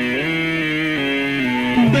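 Live rock-ballad performance: strummed acoustic guitar accompaniment under a male voice holding a sung note, which slides up just after the start and falls away near the end.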